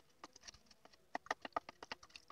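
Wooden stick stirring fertilizer solution in a plastic measuring jug, knocking against the jug in faint clicks that come thicker and faster from about a second in.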